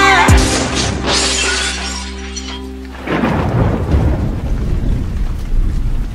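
Car-crash sound effect: a heavy low boom with a burst of shattering glass cuts the song off just after the start, and a held music chord rings on and fades out over the next few seconds. After that, steady heavy rain with low rumbling.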